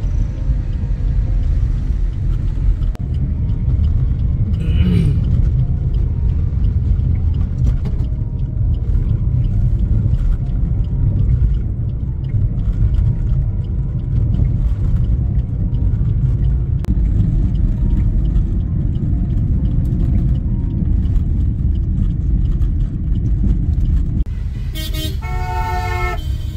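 Steady low rumble of a car driving, heard from inside the cabin. Near the end a car horn honks several times in quick succession over traffic.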